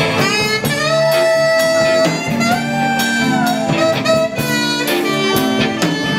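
Tenor saxophone playing a live jazz solo, with long held notes, over a band with electric guitar and a steady beat.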